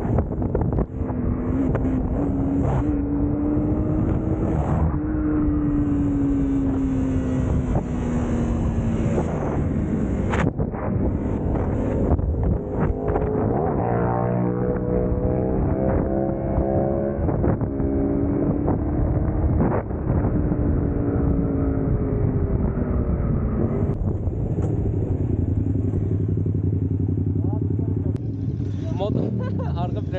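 Small sport motorcycle engine under way, its pitch rising and falling with throttle and gear changes, with wind rushing over the microphone. In the last few seconds it settles to a steadier, lower running note as the bike slows to a stop.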